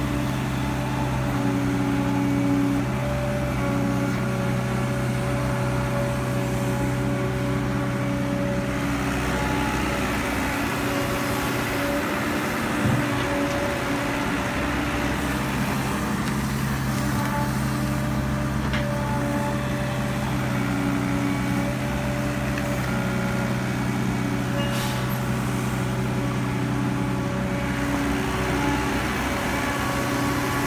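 Caterpillar E120B hydraulic excavator working: its diesel engine runs steadily under load, with hydraulic pump tones that come and go as the boom and bucket dig and lift soil.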